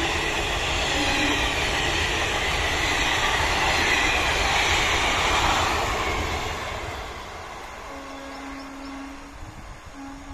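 Express train of Indian Railways ICF passenger coaches running past close by, loud steady rumble and rattle of wheels on rail, fading from about six seconds in as the train draws away. Near the end a train horn sounds one steady note for about a second and a half.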